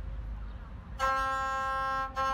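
A low outdoor rumble, then about a second in a gusle, the Montenegrin single-string bowed fiddle, starts a long steady bowed note.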